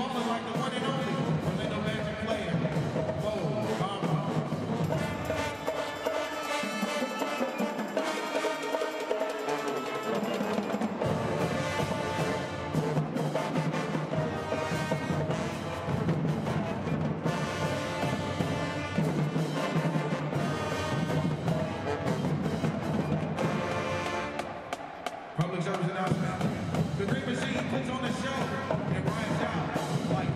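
High school marching band playing, brass over drumline percussion. The bass thins out for a few seconds, and near the end the band breaks off briefly before coming back in on a hit.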